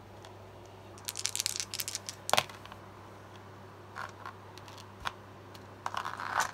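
Small six-sided gaming dice clicking against each other as a hand gathers them up from the gaming mat. A flurry of light clicks comes about a second in, with the sharpest near the middle and a few scattered clicks later.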